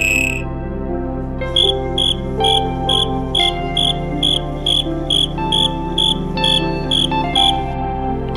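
A cricket chirping in short, evenly spaced high chirps, about two and a half a second, starting about a second and a half in and stopping just before the end. Background music with sustained tones plays underneath.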